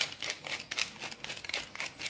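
Tall wooden pepper mill being twisted, its grinder crunching peppercorns in a rapid run of dry clicks.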